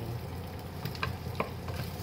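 Wooden spatula stirring food frying in a nonstick pot: a steady sizzle with a couple of light knocks of the spatula against the pan about a second in.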